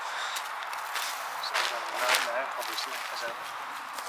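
Quiet, indistinct speech in the background over a steady hiss of wind, with a few faint soft knocks.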